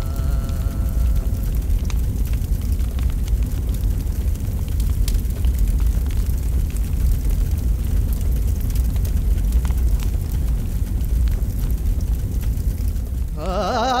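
Large wood funeral pyre burning: a loud, steady low rumble with scattered crackles and pops. A held musical tone fades out about a second in, and singing starts just before the end.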